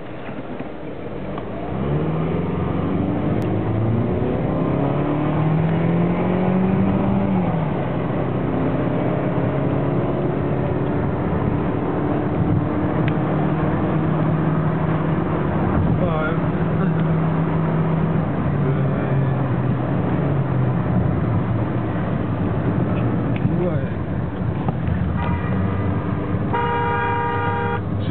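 Peugeot 406 engine heard from inside the cabin, pulling up through the revs for several seconds, dropping at a gear change, then running at a steady cruise. Near the end the car horn sounds: a short toot, then a longer blast of about a second and a half.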